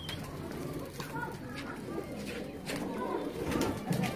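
A flock of Iraqi hybrid tippler pigeons cooing, with a few short clicks among the coos.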